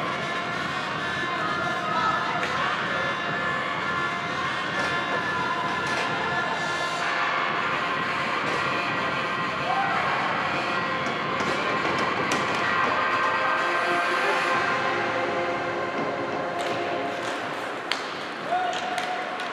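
Ice hockey rink sound during play: sharp stick and puck knocks over steady background music and some voices.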